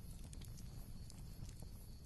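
Faint background ambience under a pause in narration: a low, steady rumble with a few scattered soft clicks.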